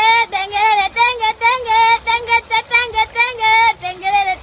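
A child singing in a high voice, a quick string of short syllables held mostly on one note with brief breaks between them.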